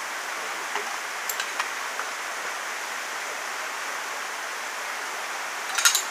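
Steady hiss of rainforest background noise. A few faint clicks come in the first two seconds, and a short burst of sharper clicks comes near the end.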